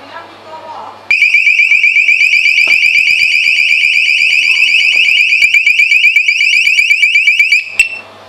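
A motion-triggered ghost-hunting alarm device going off with a loud, high, rapidly warbling electronic tone. The tone starts suddenly about a second in and cuts off just before the end, followed by a click. It was set off by someone passing close to it.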